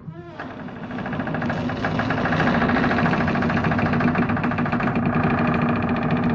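Horror sound effect: a steady low drone with a fast buzzing rattle above it, swelling in over the first second or two and then holding at full level.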